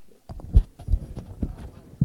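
Handling noise from a clip-on lapel microphone being fixed to a tie: a string of irregular knocks and rubbing thumps picked up by the mic itself.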